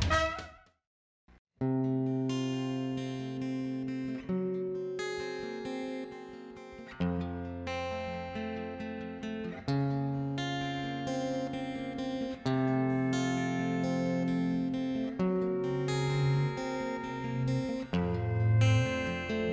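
Solo acoustic guitar playing a slow introduction of ringing chords, a new chord about every two to three seconds. It comes in about a second and a half in, after a brief silence that follows the last notes of a theme tune.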